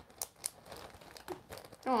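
Faint crinkling of a plastic zip-top bag being handled, in a few scattered crackles.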